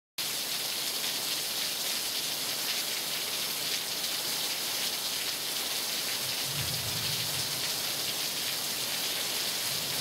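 Steady rain hissing, cutting in suddenly at the start, with a low rumble joining in past the middle.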